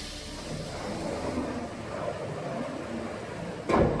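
Automatic door of a DCM32P-S vertical diamond-cut wheel repair machine closing at the press of a button: a steady rushing noise, then a loud thump near the end.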